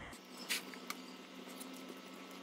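Faint, soft sounds of thick cake batter being poured from a glass bowl and scraped out with a silicone spatula, with a brief soft tap about half a second in and a small tick near one second.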